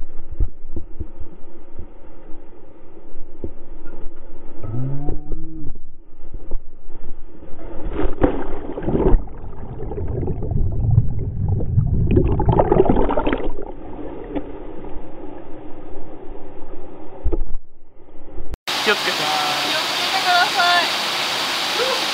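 Muffled underwater sound of a camera held under in a mountain stream's plunge pool: low churning and bubbling of water, louder twice, about 8 and 12 seconds in. About three seconds before the end the sound opens up into the steady rush of a waterfall.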